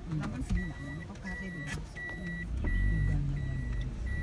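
A car's in-cabin warning beeper sounding a steady, high single-tone beep about once every three-quarters of a second, five beeps in all, over the low hum of the running engine. The engine rumble grows louder about two and a half seconds in as the car pulls away.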